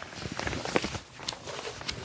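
Large paper poster rustling and crackling as it is handled and unrolled on a carpeted floor, with a string of short, irregular crackles and soft knocks.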